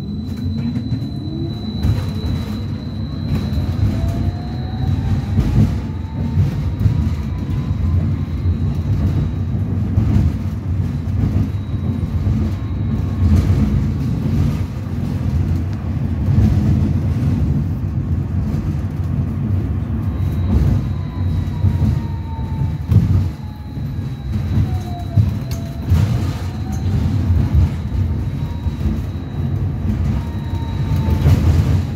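Inside a BKM 802E low-floor tram pulling away from a stop: steady rumble of wheels on rails, with the electric traction drive's whine rising in pitch over the first several seconds as the tram gathers speed. Late on the whine sinks briefly and climbs again as the tram eases off and accelerates once more.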